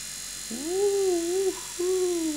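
Two drawn-out, wavering voice-like calls: one held for about a second, then a second starting near the end that sweeps down and back up in pitch.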